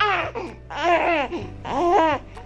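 A baby laughing and squealing: three drawn-out high calls, each rising and falling in pitch.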